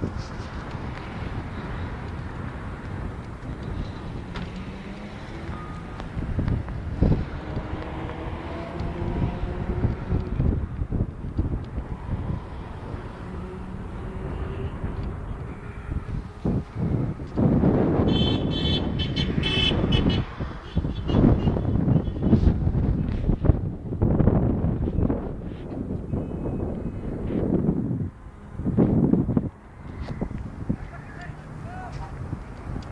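Loud outdoor noise with vehicles and a heavy low rumble, rising and falling in surges in the second half. A high pitched horn-like tone sounds for about two seconds just past the middle.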